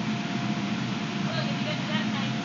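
Steady hum and rush of an inflatable bounce house's electric blower fan keeping it inflated, with faint voices in the background.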